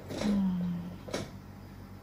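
A short wordless voice sound: a steady hum lasting under a second, dropping slightly in pitch. A single sharp click follows just after a second in.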